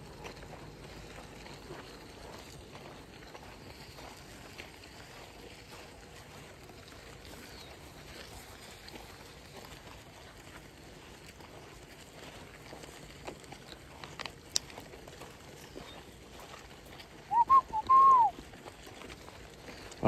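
Quiet open-air ambience with a low steady hiss and a single sharp click, then near the end a quick run of about three short, loud, rising-and-falling whistled notes.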